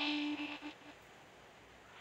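The last note of a chanted recitation held steadily and fading out within the first second, followed by near silence in the hall.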